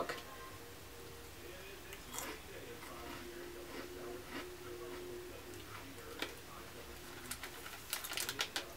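Faint crunching and chewing of a thin, crisp chocolate cookie: a few soft, separate crunches spread over several seconds.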